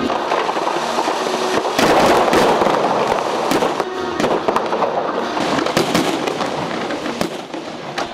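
Fireworks going off in a dense run of sharp bangs and crackles, loudest about two seconds in.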